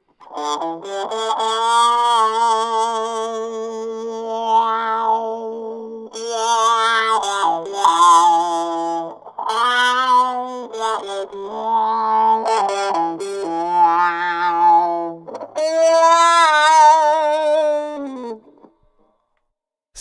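Electric guitar through a distortion pedal, voiced by a homemade talkbox (a Selenium D250X horn driver fed by a Fender 5E3 tube amp, its sound carried up a vinyl tube into the player's mouth), so the long held notes take on vowel-like, talking shapes as the mouth changes. Several sustained phrases that stop a little before the end.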